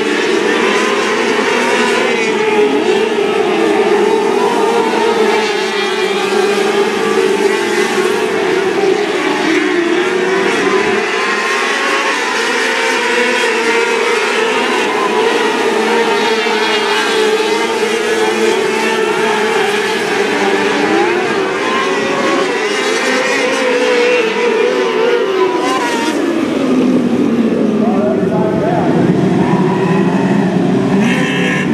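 A pack of 600cc micro sprint cars racing, their high-revving motorcycle engines overlapping in a loud, wavering drone. Near the end the pitch of the pack drops.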